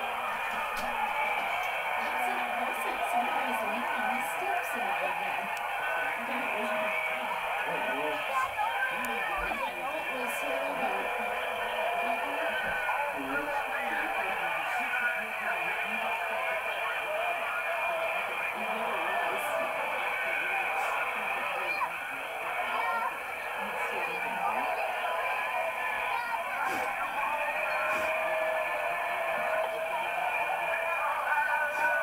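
Indistinct voices from a home video coming through a small TV speaker, thin and boxy with no bass, running without a break; no words can be made out.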